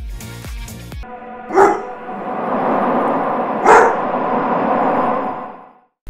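Horror-teaser soundtrack: a beat-driven music cue breaks off about a second in to a rising, eerie sustained drone. Two loud dog barks come through the drone about two seconds apart, and it fades out just before the end.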